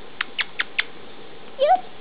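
African grey parrot clicking four times in quick succession, about five clicks a second, then giving a short rising whistle near the end.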